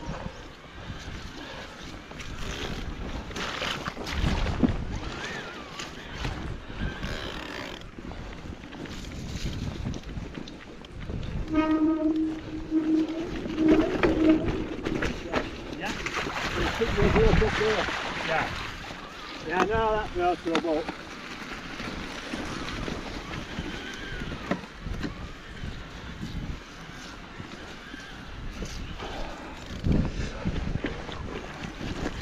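Electric mountain bike rattling over a rough, rutted moorland track, with wind buffeting the microphone. Around sixteen seconds in, the tyres splash through a flooded puddle.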